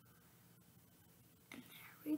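Near silence: faint room tone with a few tiny clicks, then a child's soft whispered voice starts about one and a half seconds in.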